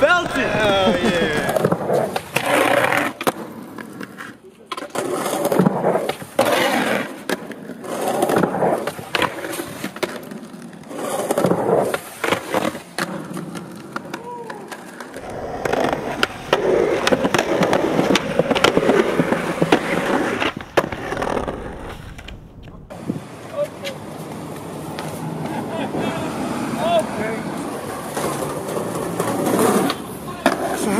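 Skateboard wheels rolling on concrete, with the sharp clacks of the board being popped and landed several times.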